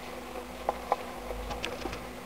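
Fancy mice moving in wood-shaving bedding: light scratching and rustling, with two sharp clicks a quarter-second apart and a few fainter high ticks near the end.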